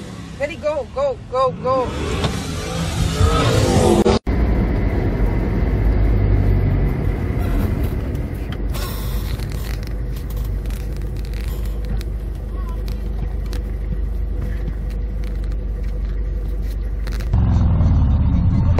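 Steady low rumble of a car heard from inside the cabin on a dashcam recording. Before it, a louder, noisier stretch breaks off abruptly about four seconds in.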